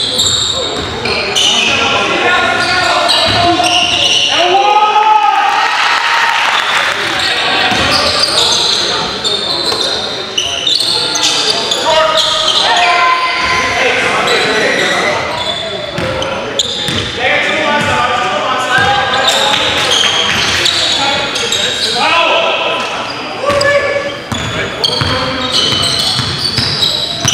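Live basketball game in a reverberant gym: a basketball being dribbled on the hardwood floor, sneakers squeaking and players' voices calling out, all mixed together.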